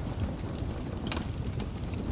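Steady rain and thunderstorm ambience laid under a relaxation track: a continuous low rumble with a thin hiss of rain above it and one brief crackle just past halfway.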